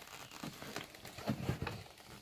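Fingers picking at and pulling open a cardboard door on a gift box: a string of small, irregular crinkles and clicks, busier in the second half.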